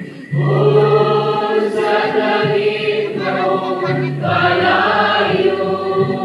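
A choir singing a hymn in long held notes, with a new phrase starting a moment in.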